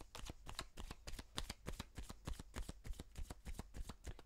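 Tarot cards being shuffled by hand: a quick run of soft clicks and riffles, several a second, as the cards slide and tap against each other.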